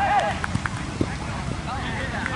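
Players' voices calling out on a football pitch: a shout right at the start and more voices near the end, over steady low background noise. A few short, sharp knocks come in the quieter middle.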